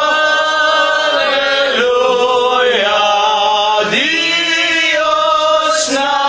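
Voices singing a slow hymn-like chant, holding long notes that slide from one pitch to the next.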